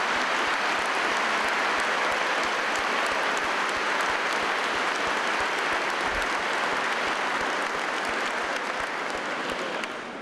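Congregation applauding steadily, the clapping dying away near the end.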